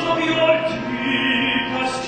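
Opera-style singing with held, sustained notes over orchestral accompaniment, from a live musical-theatre stage performance.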